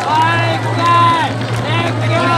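Drawn-out shouted calls from voices over a loudspeaker, several in a row, above crowd noise and a steady low hum.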